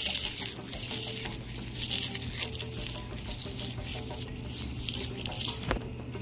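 Dry leaf litter crackling and rustling as a handful is handled and scattered onto soil.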